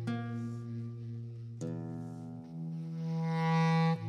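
Bass clarinet playing slow, sustained low notes, moving to a new note about a second and a half in and again just past two seconds, then swelling louder near the end.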